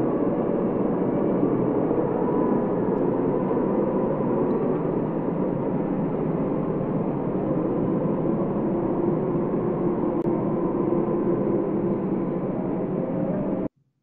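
Steady, dense ambient drone of an intro soundtrack with a few faint held tones, which cuts off abruptly near the end.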